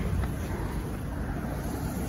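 A 2015 Ford Transit Connect's 2.5-litre four-cylinder engine idling, with a steady low rush of wind on the microphone.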